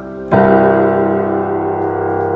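Bass notes of a Boston GP178 grand piano struck once, about a third of a second in, and left to ring with a weighty, full sustain.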